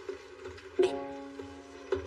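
Background score music with plucked string notes over steady held tones; a new phrase comes in about a second in.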